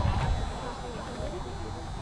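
Background chatter and calls from several distant voices, with a low rumble underneath.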